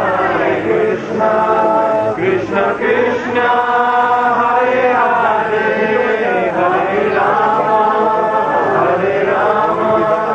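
Kirtan: devotional chanting sung in continuous melodic lines, with long held notes.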